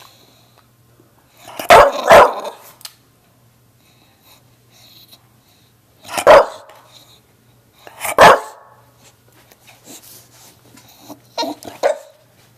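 English Bulldog barking in loud single barks: two in quick succession about two seconds in, one around six seconds, one around eight seconds, and softer barks near the end.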